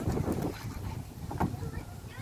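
Low rumble of wind on the microphone, with a single click about one and a half seconds in and faint children's voices near the end.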